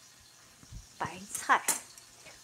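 A soft low thump a little before halfway, then a woman's voice starting to speak in the second half, while a knife and a vegetable peeler are handled on a plastic cutting board.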